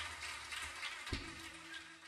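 Faint hiss of a live club recording fading out, with a single thump about a second in.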